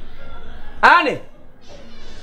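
A cat meowing once, a short call that rises and falls in pitch, about a second in.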